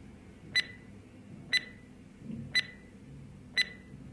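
Quiz countdown timer sound effect: four short, sharp ticks with a brief ringing tone, one each second, as the on-screen clock counts down.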